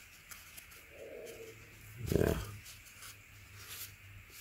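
Quiet room with a low steady hum and faint clicks from a paper-and-plastic cartridge oil filter element being turned in the hands, with a short spoken 'yeah' about halfway through.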